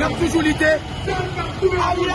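A man speaking loudly in the street over a steady low rumble of road traffic.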